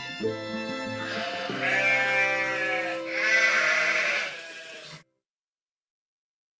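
Background folk-style music with two long sheep bleats over it, the first about a second and a half in, the second around three seconds in; the audio cuts off suddenly about five seconds in.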